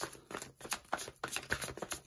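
A deck of tarot cards being shuffled by hand: an irregular run of small clicks and flicks as the cards slide and slap against one another.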